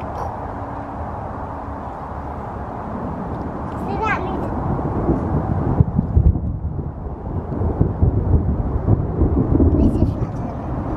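Thunder rumbling: a low rolling rumble builds about three seconds in and grows loud, with crackle, through the second half.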